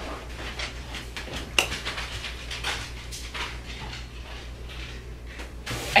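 Quiet room with a steady low hum, broken by a few faint knocks and handling sounds, the clearest about a second and a half in.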